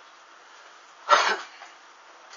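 A person coughs once, about a second in, over a faint steady hiss.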